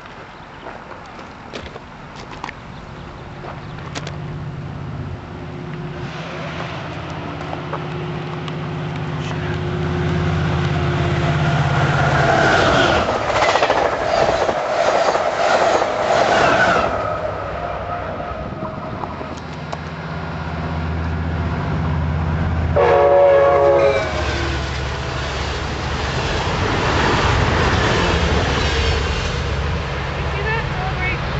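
Amtrak Pacific Surfliner train with F59PHI diesel locomotives approaching and passing close by. The locomotive's engine hum builds to a peak as it goes past, followed by the rumble and clatter of the bilevel cars on the rails. A short horn blast about two-thirds of the way through is the loudest sound.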